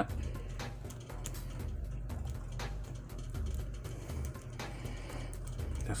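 Quiet background music with a low bass line, with a few faint clicks and rubs from hands handling a plastic action figure.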